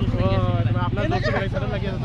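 Loud men's voices over the steady low hum of a bus engine idling.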